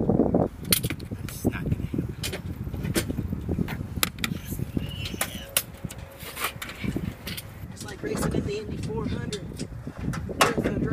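Indistinct voices over a low background rumble, with many short sharp clicks and knocks scattered throughout.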